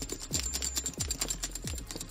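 Metal buckles and dangling rings on a black leather Air Jordan 1 Comme des Garçons sneaker jingling as the shoe is shaken: a quick run of small metallic clinks over a thin high ring, like sleigh bells.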